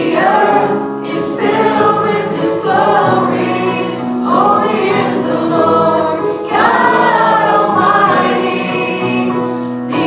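A small worship band performing a song live: singers at microphones sing phrases a few seconds long over sustained keyboard chords.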